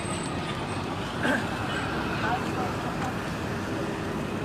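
Steady road traffic noise in a busy street, with faint chatter from people standing nearby.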